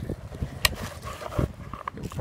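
Handling noise from a gloved hand on the pump and hose rig: rustling, a few soft knocks and one sharp click about two-thirds of a second in. The pump is not running.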